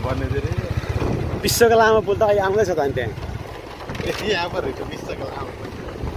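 Motorcycle engine running steadily while riding, a low rapid pulsing drone, with wind noise on the microphone.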